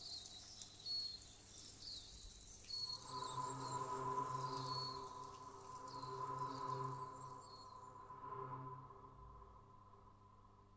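A didgeridoo plays a soft, steady drone that comes in about three seconds in, swells and dips in a slow pulse, and fades out near the end. Faint high chirps from a nature recording sound over it through the first part.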